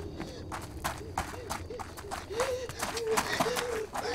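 A woman running fast, her footsteps quick and even at about four or five a second, with short gasping sobs between the steps.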